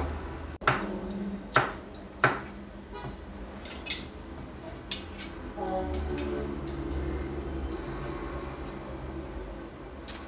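Kitchen knife slicing red chili peppers on a wooden chopping board: about five sharp, separate knocks of the blade on the board in the first five seconds. A low steady hum fills the rest.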